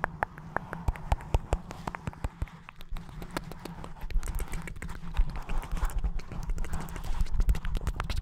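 Close-up mouth sounds and kisses right on a foam-covered microphone: a quick, irregular run of wet clicks and smacks. Under them, a low rumble from hands cupping and rubbing the mic.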